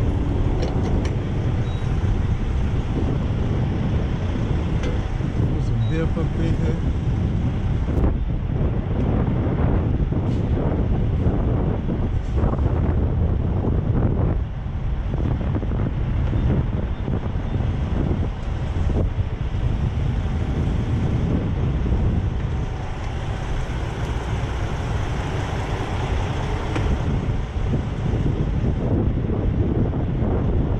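Steady low rumble of idling diesel trucks with wind buffeting the microphone, broken by a few short knocks and clicks.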